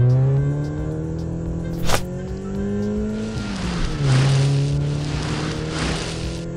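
Car engine sound effect, revving with its pitch climbing slowly, dropping a little past three seconds in and then climbing again. A short sharp sound comes about two seconds in, with background music underneath.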